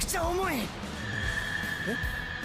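Anime episode soundtrack: a character's voice over background music, then a steady high ringing tone that starts about a second in.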